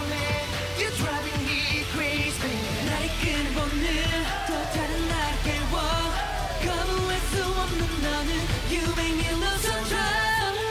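K-pop dance song performed live on stage: male vocals over a pop backing track, with a deeper bass line coming in about three seconds in.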